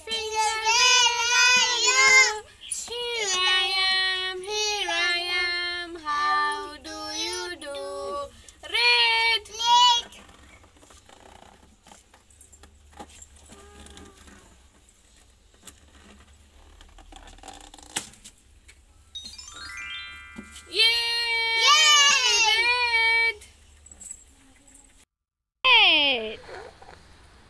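Children's song sung in a high voice, in two stretches with a quiet gap of about ten seconds between them, and a short rising run of tones just before the second stretch.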